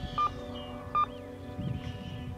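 Two short electronic beeps of the same pitch, about a second apart, over a steady background of sustained tones.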